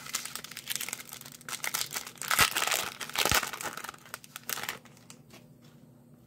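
Foil wrapper of a baseball card pack being torn open and crinkled by hand, with a dense crackle that is loudest past the middle, where there are two sharp snaps. The crackle dies down after about five seconds as the cards come out.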